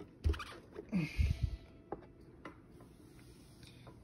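Handling noise as an electric guitar is turned over: a few soft thumps and knocks in the first second and a half, then a few small clicks and faint scrapes.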